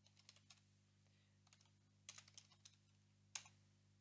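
Faint computer keyboard typing: short clusters of keystrokes, then one louder, sharper key press a little over three seconds in.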